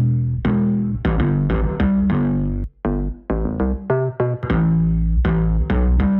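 A bass guitar loop plays a line of short plucked notes, about two to three a second, with a brief break midway. It runs through Guitar Rig 6 Pro's Dirty Studio Bass preset, with the VC 160 and VC 2A compressors and the Bass Invader amp engaged.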